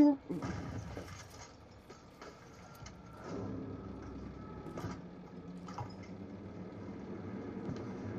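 Short film soundtrack: a few faint knocks, then from about three seconds in a low, steady drone.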